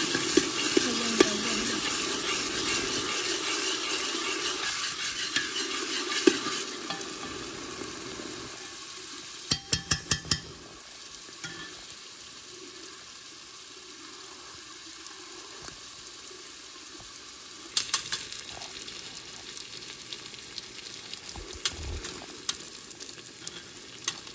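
Potatoes and peas sizzling in a hot pan. The sizzle is loud at first and dies down to a quieter frying after about six seconds, with a spoon knocking against the pan in a quick run of taps near the middle and a few more later.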